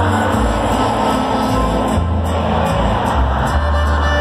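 Live Mexican regional band music over a concert sound system, with deep bass notes, heard from within a cheering crowd.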